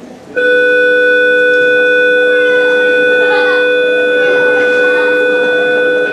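A loud, steady electronic tone made of several pitches sounding together, starting suddenly just after the start and holding at an even level without wavering.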